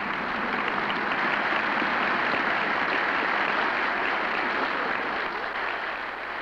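Large audience applauding, a dense steady clapping that swells up at the start and eases slightly near the end, heard through an old film soundtrack.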